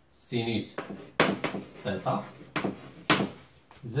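Chalk tapping and scraping on a blackboard as terms of an equation are written, with several sharp taps of the chalk on the board, between brief muttered speech.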